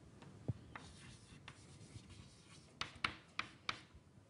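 Chalk writing on a blackboard: faint scratches and ticks, then a quick run of five sharp chalk taps about three seconds in.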